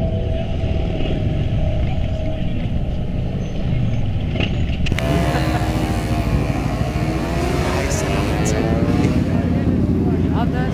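Low rumble of motorcycle engines running, with people's voices mixed in. About halfway the sound changes abruptly to a brighter mix, with engine notes rising and falling among the voices.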